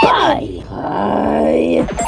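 A cartoon character's voice: a short falling cry, then a long drawn-out groan held on one steady pitch that stops just before the end.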